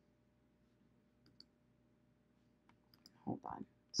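Faint computer mouse clicks over quiet room tone, a quick pair about a second and a half in and a few more near the end, where a woman's voice begins.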